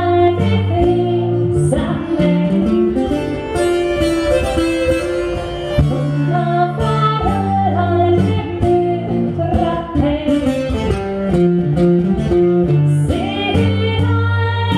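Live Nordic folk music: a woman sings over a nyckelharpa and a plucked long-necked string instrument, with sustained low notes under the melody.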